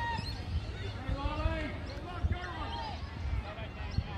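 Distant shouts and calls from players and spectators at a junior Australian rules football game, several voices overlapping, over a steady low rumble of wind on the microphone. A few short thumps break through, the sharpest about two seconds in.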